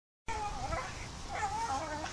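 A dog whining in high, wavering phrases that rise and fall, starting a moment in after a brief silence.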